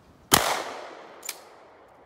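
A single shotgun blast about a third of a second in, the loudest sound here, its report fading away in an echo over about a second. A short sharp click follows about a second after the shot.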